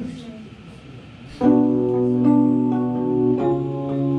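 Stage keyboard coming in with held, sustained chords about a second and a half in, moving to a new chord about two seconds later.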